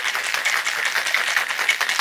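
Ice rattling hard and fast inside a stainless steel cocktail shaker as a margarita is shaken to chill it: a rapid, continuous clatter.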